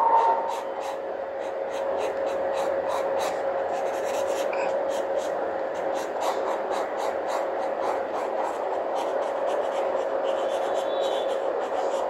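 Pencil sketching on paper: quick scratchy strokes, several a second, over a steady background hum with a constant whine.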